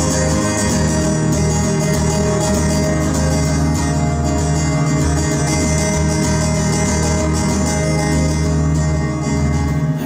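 Fingerpicked acoustic guitar playing an instrumental passage, with low bass notes held steady under the picking.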